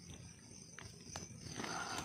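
Rustling in leaves and undergrowth as a crouching person shifts and starts to get up, with two small clicks about a second in, over the steady high chirring of night insects.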